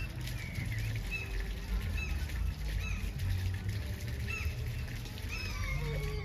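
Small songbirds chirping in the background: short high calls repeating every second or so, over a steady low rumble.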